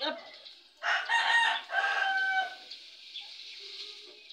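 A rooster crowing once, starting about a second in: a loud call of about a second and a half that ends on a long held note.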